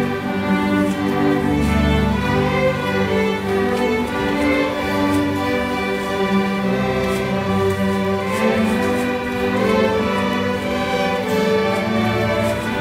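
A seventh- and eighth-grade string orchestra of violins, cellos and double basses playing together in steady, held notes, with the cellos and basses carrying a low part beneath the violins.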